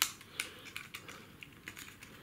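Small plastic clicks and ticks from a plastic tie being pulled out through a Kyosho Mini-Z plastic body shell: about six sharp little ticks, the loudest right at the start.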